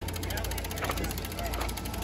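Rapid, even ticking of a bicycle's rear freewheel as the bike is wheeled along, over a steady low rumble, with faint voices in the background.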